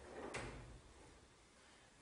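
A single short knock about a third of a second in, then quiet room tone.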